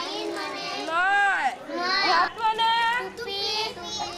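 A child's high voice reciting a vocabulary lesson, saying an English word and its meaning ("'nine' means nine"), its pitch rising and falling widely.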